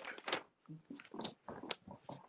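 Handling noise as the recording device is picked up and moved: a string of irregular rustles and soft knocks, with cloth brushing against the microphone.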